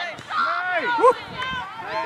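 Several high-pitched voices shouting and calling out over one another, with the loudest call rising about a second in.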